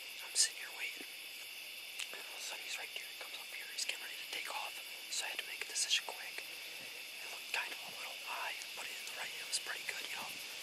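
A man whispering in short, breathy phrases close to the microphone.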